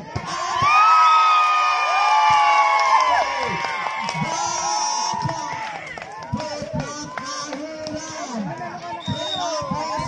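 A crowd of spectators cheering and shouting. The cheer swells about half a second in, is loudest for the next few seconds, then dies down into scattered shouts and chatter.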